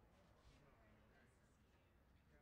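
Near silence, with faint distant voices of people chatting.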